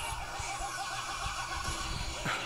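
Movie trailer soundtrack played through a TV speaker: a rapid quavering, animal-like call of about ten pulses a second over a low rumble.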